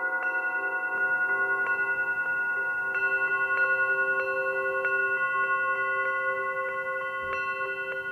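A matched diatonic set of antique cup singing bowls struck one at a time with a mallet, playing a slow melody. Several bowls ring on together with a slow wavering pulse, and new notes come in about a second and three seconds in.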